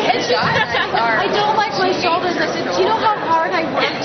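Loud, indistinct chatter of several people talking over one another in a busy room.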